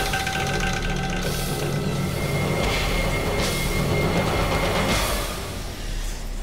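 Tense, dramatic background music with long held notes, easing off about five seconds in.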